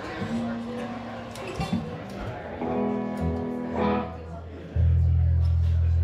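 Guitar notes played loosely by a band on stage, a few held notes in turn. About five seconds in, a loud, steady low hum sets in and holds.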